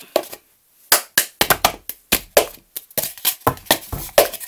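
Cup-song rhythm: hand claps mixed with a foam cup being tapped, lifted and knocked down on a wooden table, in a run of sharp, quick hits that starts after a short pause about a second in.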